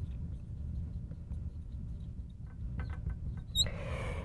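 Marker writing on a glass board: faint short squeaks and taps as the letters are drawn, more of them in the second half, over a low steady hum.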